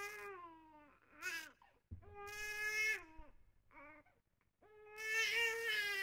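A baby crying in a run of five wails, long and short in turn, each sagging in pitch as it ends; the longest comes near the end.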